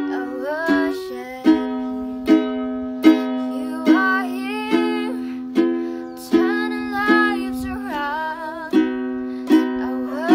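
Ukulele strummed in a slow, even rhythm, one strum about every 0.8 seconds, ringing chords. A girl's soft singing voice runs over it in several phrases.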